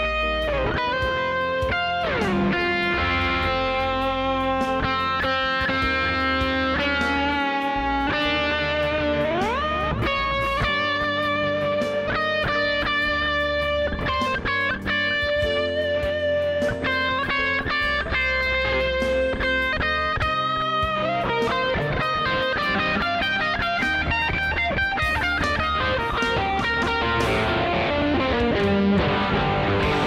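Electric guitar playing a melodic lead line with sliding and bending notes, over a steady low bass part.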